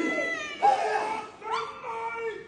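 Drawn-out chanted vocal calls of a Māori haka welcome, a new held note starting about every second.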